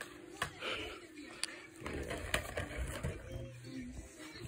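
A few sharp clicks and light knocks from plastic toy construction vehicles being handled on a rug, with soft vocal sounds from a small child in the second half.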